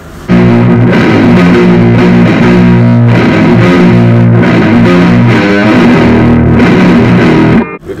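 Electric guitar played through a Blackstar ID:CORE 100 combo amplifier: loud, sustained chords and riffs that start just after the beginning and stop abruptly near the end.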